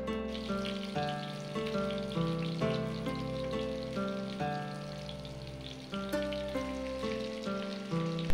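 Background music with a run of plucked notes, over a faint sizzle of sliced shallots and green chillies frying in oil in a pan.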